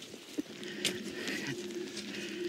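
A faint, steady hum of two low, even tones, which the hikers call the soundtrack of a forest hike, with a light tick or two in the first second.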